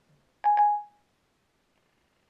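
Siri's electronic chime from the iPad's speaker: one brief two-note tone about half a second in that fades quickly. It marks Siri ending its listening and acting on the spoken command.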